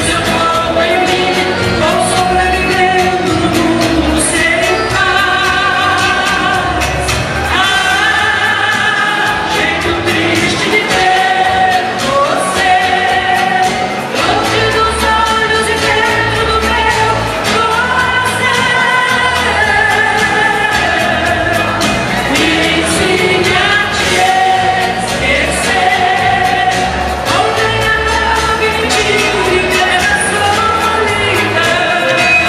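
A woman singing through a microphone and PA over amplified backing music with a steady bass beat, holding long notes with vibrato.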